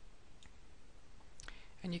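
Two faint computer mouse clicks over a quiet background hiss, then speech begins near the end.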